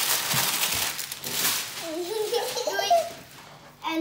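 Clear plastic wrapping film crinkling and rustling as it is handled and crumpled for about two seconds, followed by a child's voice.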